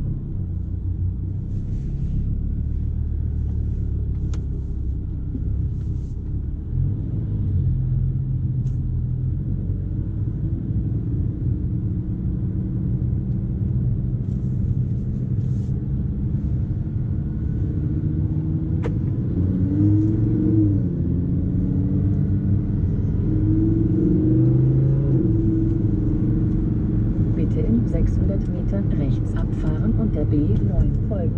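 Audi R8 V10 Plus's naturally aspirated V10 heard from inside the cabin, pulling away gently at low revs and low speed. The note rises and falls in pitch a few times as it moves up through the first gears.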